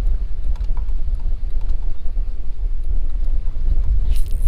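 Wind buffeting the microphone: a steady low rumble, with a few faint ticks.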